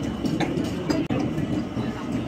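Steady low background din of a busy restaurant dining room, with a few light clicks of tableware.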